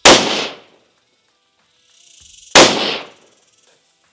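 Two shots from a 6mm Creedmoor precision rifle, about two and a half seconds apart, each a sharp crack with a short decaying tail.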